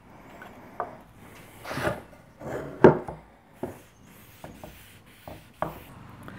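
Thinned polyurethane being hand-wiped onto a pine board: irregular rubbing strokes over the wood, with a few light knocks, the sharpest about three seconds in.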